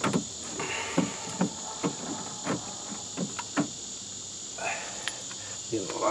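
Scattered light taps and clicks of a hot glue gun and a plastic bottle working against screen wire on a plastic tote floor, over a steady high-pitched drone.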